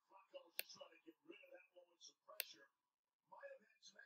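Faint speech with two sharp computer-mouse clicks, about half a second in and again about two and a half seconds in.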